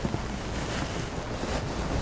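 Steady room background noise: an even hiss with a low rumble underneath, in a short pause between spoken phrases.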